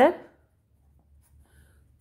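Faint scratching of a pen writing on paper, just after a spoken word ends.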